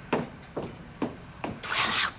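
Footsteps on a hard floor, four even steps about two a second, of a person walking away. Near the end comes a loud, breathy rush of noise.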